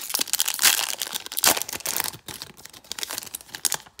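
Foil wrapper of a Pokémon trading card booster pack crinkling as it is torn open and the cards pulled out: a dense run of crackles, loudest about half a second and a second and a half in.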